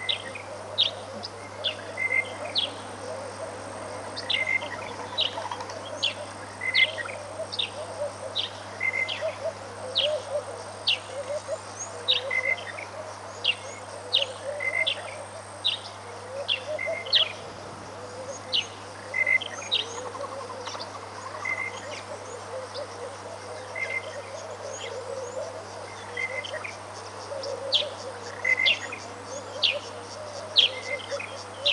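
Birds calling: a steady run of short, sharp calls that drop in pitch, a few a second, over softer, lower chatter, with a low steady hum underneath.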